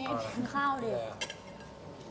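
Dishes and cutlery clinking at a table amid people talking, with one sharp clink a little past a second in.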